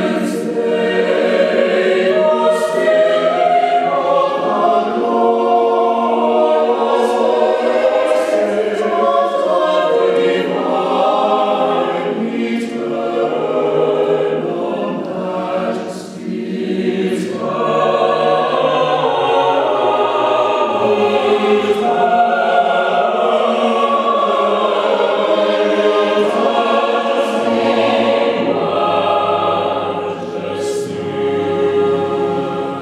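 Mixed double choir singing unaccompanied: sustained, overlapping chords with crisp 's' consonants cutting through, and a short breath between phrases about sixteen seconds in.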